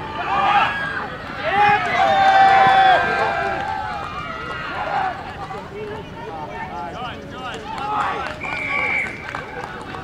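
Several voices shouting and calling out around a rugby field during open play, with one long held shout about two seconds in.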